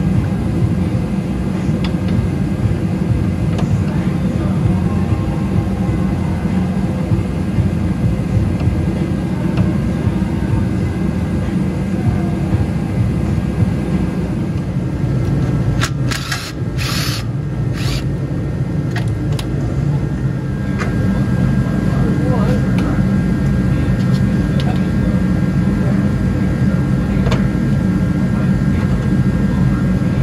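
A steady low hum runs throughout. About two-thirds of the way in, a cordless power tool runs in three short bursts on a fastener under the car.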